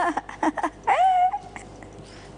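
A high-pitched human vocal cry about a second in, rising and then held for about half a second, after a few short voice sounds.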